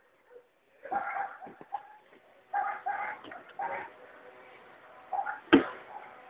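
Faint, short background sounds, a few in a row, then a single sharp knock about five and a half seconds in.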